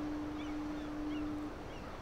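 A single steady low tone, held and then stopping about three-quarters of the way in, over a faint hiss of open-air ambience with a few small high chirps.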